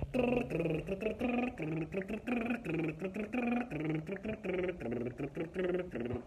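A singer's wordless vocal warm-up: quick runs of short pitched vocal sounds, about three or four a second, moving up and down in pitch.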